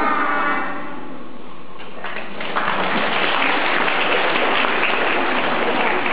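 Children's singing trailing off, then an audience applauding in a large hall from about two seconds in, steady to the end.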